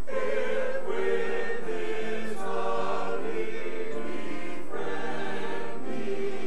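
Church choir of mixed voices singing together, with short breaks between phrases.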